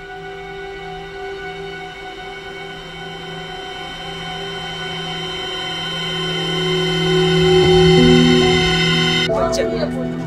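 Background film score of sustained, held chords that slowly swell louder, peaking about eight seconds in, then cutting off abruptly near the end as voices come in.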